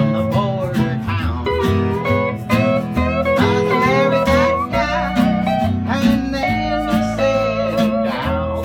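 Western swing band playing live, with a multi-neck console steel guitar taking the lead in sliding notes over upright bass, rhythm guitar and fiddle.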